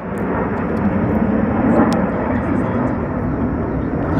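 Steady jet-engine noise from a Blue Angels formation flying over, building slightly as it goes.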